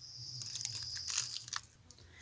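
Crunchy rustling and scratching close to the microphone, handling noise as a sleeve and hand brush against the phone, dying away near the end.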